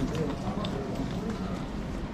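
Indistinct background voices of people talking, with footsteps on a tile floor.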